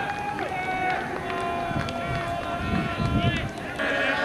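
Indistinct shouts and calls from ultimate frisbee players and sideline onlookers on a grass field, several voices overlapping, with a brief low rumble about three seconds in.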